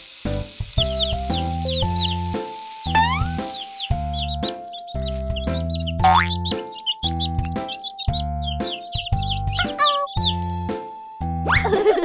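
Bouncy children's background music with a regular beat, overlaid with many short high chirping sound effects and two rising whistle slides, the first about three seconds in and the second about six seconds in.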